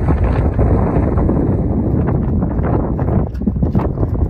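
Heavy wind buffeting the microphone, with a horse's hoofbeats on the arena surface becoming clearer in the second half as the horse comes closer.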